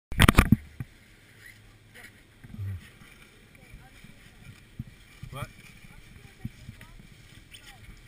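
Several sharp knocks right at the start from the action camera being handled or bumped on its mount, then faint wind and distant voices across a snowy ski slope.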